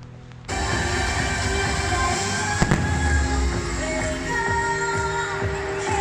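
Fireworks going off over loud show music, starting abruptly about half a second in, with one sharp bang about two and a half seconds in.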